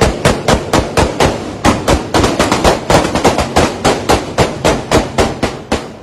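A rapid volley of gunshots, sharp cracks about four or five a second.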